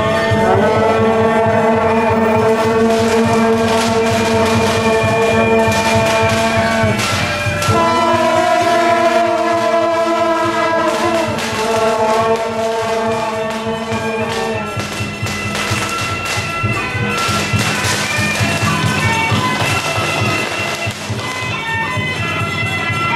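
Marching brass band playing a melody in long held notes over a steady beat.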